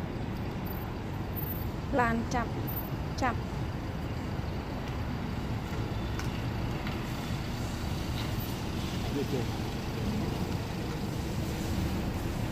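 Steady low rumble of road traffic, with a person saying a short word twice about two and three seconds in.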